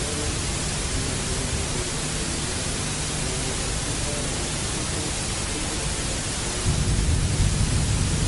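Steady hiss of recording noise from an old soundtrack, with a faint low hum under it that grows louder near the end.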